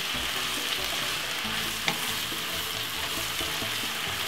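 Cabbage and mixed vegetables sizzling steadily in a non-stick frying pan on medium-low heat while being stirred with a wooden spoon, with a single light knock about two seconds in.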